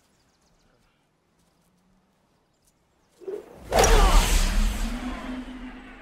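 Near silence, then about three seconds in a golf drive: a sharp strike of club on ball followed by a loud whoosh with a deep rumble as the ball flies off, fading away.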